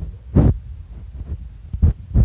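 Dull low thumps, one about half a second in and another near the end, over a steady low rumble: finger taps on a phone's touch screen picked up through the phone's own microphone.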